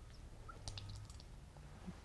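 A few faint clicks and small handling sounds of paint containers and a tube being worked on a worktable, over a low room hum.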